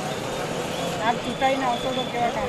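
Street ambience: faint voices of people talking in the background over a steady hum of outdoor noise.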